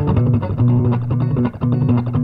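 Nine-string Esquire electric guitar played through a small amp, rapidly picking low notes in a steady run.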